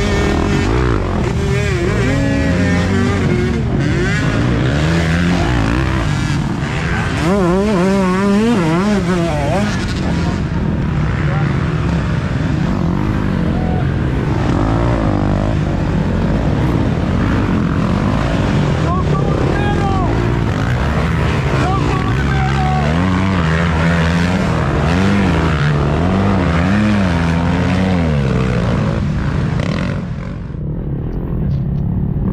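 Several dirt bike engines revving hard and easing off as riders work through deep mud, the pitches of the overlapping engines rising and falling constantly.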